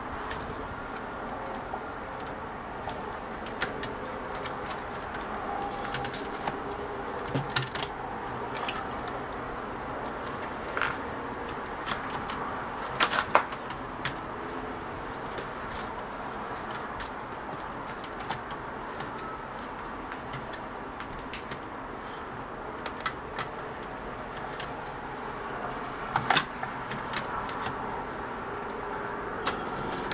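Scattered light clicks and knocks of a TV power-supply circuit board being handled and set into the set's sheet-metal chassis, over a steady background hiss. The sharpest clicks come about halfway through and again near the end.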